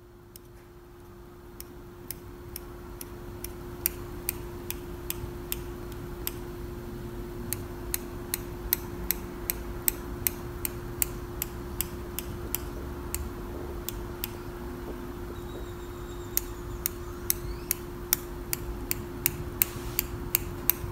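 Small scissors snipping into soft modeling chocolate to cut scale texture, in sharp snips at an uneven pace of about two a second with a couple of short pauses. The snipping noise is very satisfying. A steady low hum runs underneath.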